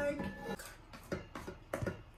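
Spatula scraping and knocking against a stainless-steel mixing bowl as cake batter is worked, a few short clicks and scrapes.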